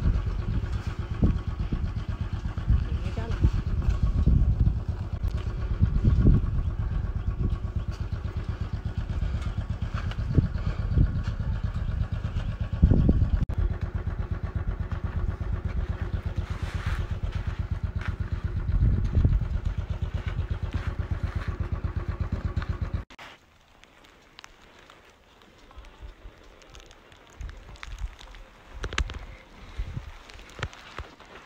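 Motorcycle engine running with a steady, even beat and a few louder swells. It cuts off abruptly about 23 seconds in, leaving only faint, scattered sounds.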